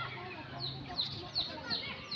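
Chickens calling: short, high calls that fall in pitch, repeating several times a second. A low hum runs under them for the first part.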